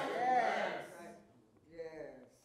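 Speech only: a man's voice trailing off at the end of a sermon phrase in the first second, then a pause with one short, faint vocal sound near the end.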